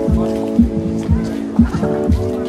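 Electronic house/nu-disco track: a four-on-the-floor kick drum about two beats a second under sustained synth chords, which change shortly before the end.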